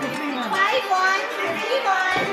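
Lively overlapping chatter of several voices talking at once, high-pitched and animated, with no single speaker standing out.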